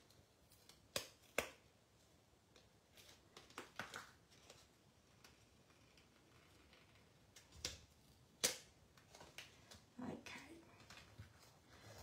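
Sheets of card stock and paper being handled on a desk: quiet rustling with a few sharp taps and slaps, two about a second in and two more around eight seconds.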